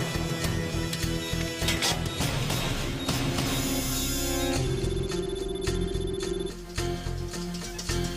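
Background music score with low pulsing and sustained synth tones. A high repeating electronic beep runs for about two seconds past the middle.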